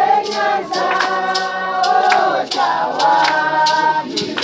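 A group of men, women and children singing together in long held notes, with sharp hand claps keeping a beat about twice a second.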